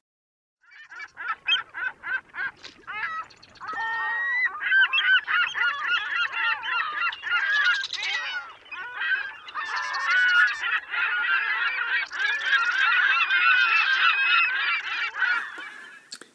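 A flock of birds calling: a few spaced calls at first, then many overlapping calls building into a dense, continuous din that fades near the end.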